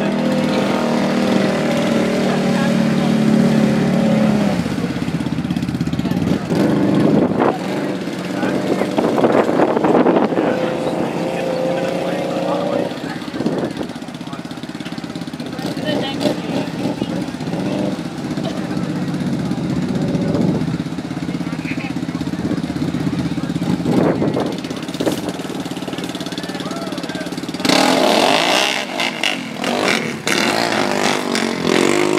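ATV engines idling and revving across the bog pit, the pitch rising and falling. Near the end one engine revs up sharply and louder.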